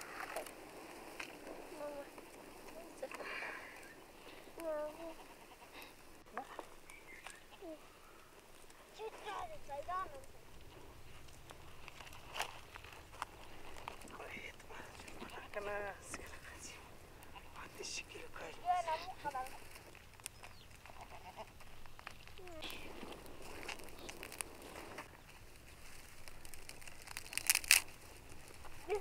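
Intermittent talk between adults and a child in short phrases with pauses, not in English. A few sharp clicks come near the end.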